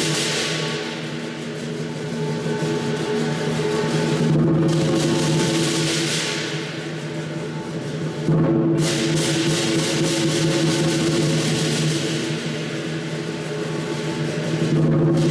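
Cantonese lion dance percussion: a large lion drum beating with a gong and clashing cymbals, the cymbal crashes swelling every few seconds, loudest from about eight seconds in.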